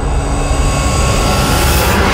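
Cinematic sound-design riser: a loud, dense rushing rumble with a deep low end, built up from silence and holding at full strength, brightening right at the end.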